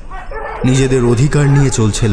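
Dogs snarling and growling at each other in a fight, a drama sound effect: low held growls begin about half a second in and break off twice.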